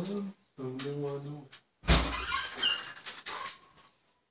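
A man's voice singing drawn-out notes, broken by a sudden loud thump a little under two seconds in, followed by more high-pitched voice.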